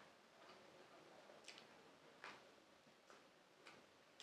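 Very faint chewing of pizza: a few soft, irregular mouth clicks, about five, the loudest a little past two seconds in.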